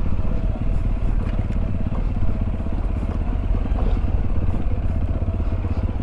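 Sinnis Terrain 125's single-cylinder engine running steadily on a steep downhill dirt track, with a few faint clicks and rattles over it.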